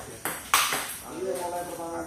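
Table tennis ball being hit in a rally: a light tick, then a loud sharp crack of ball on bat about half a second in, ringing briefly.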